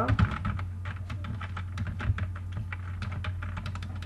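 Computer keyboard keys being typed: a run of irregular keystroke clicks, several a second, over a steady low hum.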